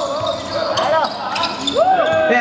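A basketball game on a hardwood court: sneakers squeaking in short, sharp squeals, with a few squeaks in the middle and a rising squeak near the end, among thuds of the ball bouncing.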